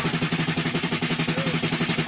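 Music with a fast, even drum roll, about a dozen strokes a second over a steady low note.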